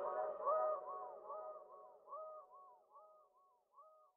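The hip hop track's melodic loop playing on alone after the drums and bass have stopped. It is a repeating run of short, arching notes that fades out and is very faint by the end.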